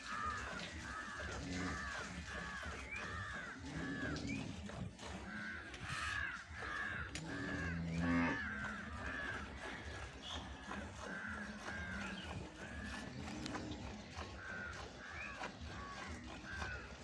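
Hand-milking a water buffalo: the milk squirts into a steel bucket of milk in a steady rhythm of about two strokes a second, pausing briefly now and then. A brief, louder low sound comes about eight seconds in.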